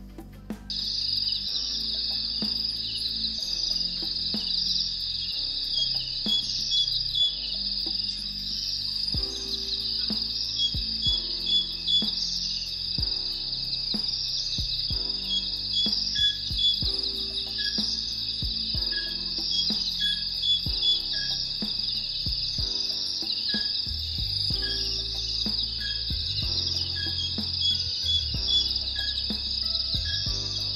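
A dense, steady, high-pitched insect chorus with a bird calling in short repeated chirps, over soft background music with low notes. The chorus comes in abruptly about a second in.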